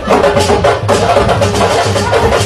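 Loud, fast sabar-style drumming: a dense, steady rhythm of sharp drum strokes, several to the second, over a low bass line, the kind of music the leumbeul dance is performed to.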